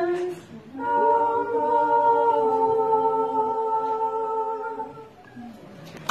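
Women's a cappella shanty choir ending a song: a phrase closes just after the start, then the voices hold one long final chord in harmony that fades out about a second before the end.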